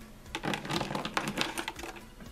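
Hard plastic toy dinosaur figures clicking and clattering against each other and a clear plastic tub as a hand rummages through them: a quick, irregular run of small clicks starting about half a second in.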